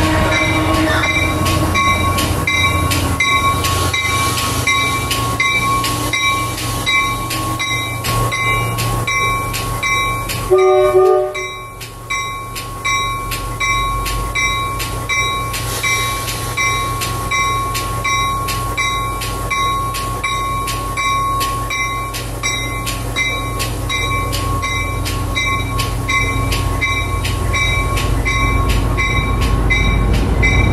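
Shoreline East push-pull commuter train rolling slowly into the station over a low, steady rumble, with a bell ringing in an even beat throughout. A short horn toot sounds about eleven seconds in.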